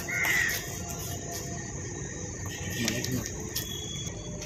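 A crow cawing once, briefly, just after the start, over steady outdoor ambience with a faint high insect drone.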